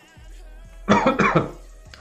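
A man coughs once, briefly, about a second in, over faint background music.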